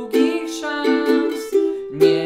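Ukulele strummed in a steady down-down-up-down-up chord pattern, with a man singing along over the strums.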